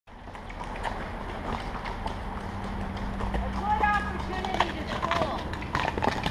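Horses' hooves clip-clopping in an irregular run of short clicks, with a person's voice briefly in the middle.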